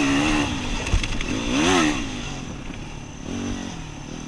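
Yamaha WR250R dual-sport motorcycle's single-cylinder four-stroke engine under way on a rough trail, its revs rising and falling with the throttle, with one sharp revving climb and drop near the middle. A sharp knock about a second in.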